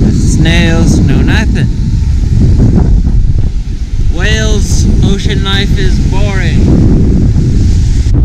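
Wind buffeting the action camera's microphone, a loud low rumble throughout. A man's voice makes a few short vocal sounds without clear words, once near the start and again from about four to six and a half seconds in.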